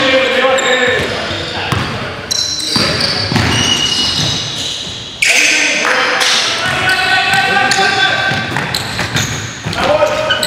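Game sound of a basketball game in a gym hall: a ball bouncing on the hardwood court, sneakers squeaking and players calling out, all echoing in the hall. The sound changes abruptly twice, about two and five seconds in.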